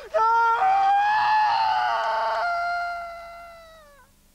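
A man's long, high scream that holds steady, then fades away and dips in pitch near the end, like a cry of someone falling from a cliff.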